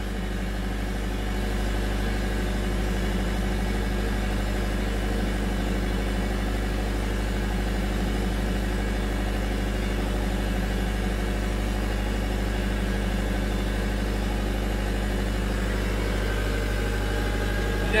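Two Kubota V3800T four-cylinder turbo-diesel generator sets running steadily in parallel at constant speed, each carrying about half of a 43 kW resistive load.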